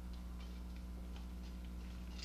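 Steady low electrical hum with faint, irregular light ticks over it.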